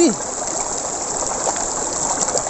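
Shallow rocky river flowing over and around stones: a steady, even rush of running water.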